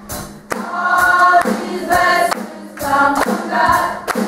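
Youth choir singing in chorus, in about three phrases that begin half a second in, with sharp percussive hits between them.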